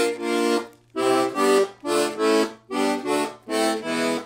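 Castagnari Rik diatonic button accordion's 12 left-hand bass and chord buttons played as a run of about seven short, separate chords with brief gaps between them.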